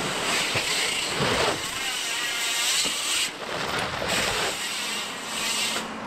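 Rushing noise of wind on the microphone mixed with a mountain bike's tyres rolling on dirt, rising and falling in swells as the rider drops in and rides a dirt-jump line.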